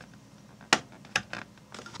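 Small clicks and taps of an IDE SSD board being handled and seated in a laptop's hard-drive bay: one sharp click about three quarters of a second in, then a few lighter ticks.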